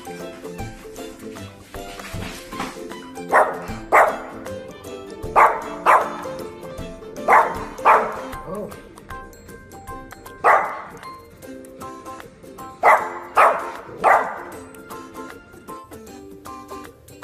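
Yorkshire terrier puppy barking: about ten short, sharp barks, mostly in quick pairs, with a run of three near the end, over background music.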